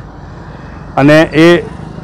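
A man's voice speaks briefly about a second in, over a steady background of outdoor street noise.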